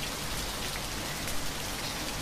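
Steady, even hiss of falling water, running without change.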